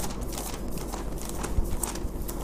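Bible pages being leafed through on a tabletop and a Bible in a black cover being handled: faint rustling with scattered small clicks and a soft knock near the end.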